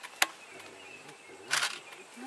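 An African elephant feeding on dry branches at close range: a sharp snap about a quarter second in, then a brief rustling crunch about a second and a half in.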